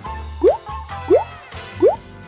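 Light children's background music with a steady bass, over which three short rising "bloop" notes sound about two-thirds of a second apart.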